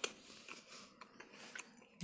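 Faint chewing of a mouthful of freshly baked roll, with a few small clicks.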